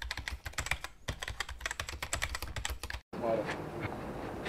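Rapid, irregular small clicks and crackles for about three seconds, cutting off abruptly.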